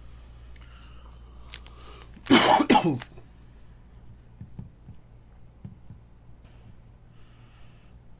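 A person coughing: a loud cluster of two or three harsh coughs a little over two seconds in, lasting under a second.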